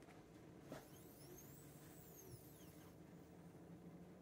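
Faint high-pitched whine of a small stepper motor turning under joystick control, its pitch rising and then falling as the motor speeds up and slows, over a low steady hum. A faint click about three-quarters of a second in.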